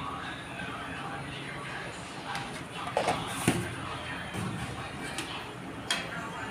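Indistinct background talk with a few sharp clicks and knocks; the sharpest, just before the end, is a steel ladle striking the aluminium kadai as stirring begins.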